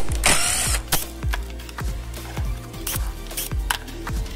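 Background music with a steady beat. A power drill runs briefly near the start, working a bit into the wooden sanding drum, and a few sharp clicks follow.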